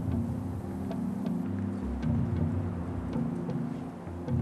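Background music of low held and pulsing notes, with faint light ticks above them.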